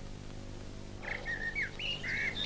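Small birds singing, a run of short chirping phrases with quick rising and falling notes that starts about a second in, over a faint steady low hum.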